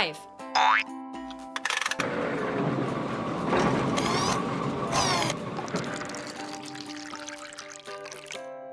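Cartoon sound effects over light children's music: a short rising boing about half a second in, then a rushing, gurgling noise of a bottle-filling machine from about two seconds in, with a few brighter swishes, fading out over the last couple of seconds.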